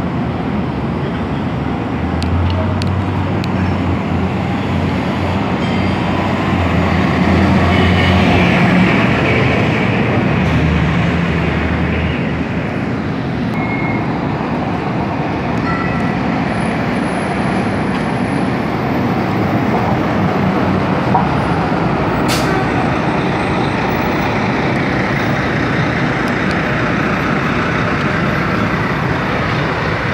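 Loud, steady city traffic noise. A heavy vehicle's engine drones low in the first third, is loudest about eight seconds in, and fades out about twelve seconds in. One sharp click comes about two-thirds of the way through.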